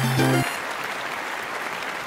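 The last notes of a short musical jingle end about half a second in, followed by steady applause.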